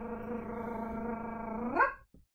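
A woman's voice holding one long, steady drawn-out syllable to build suspense, sliding up in pitch and getting louder just before it ends.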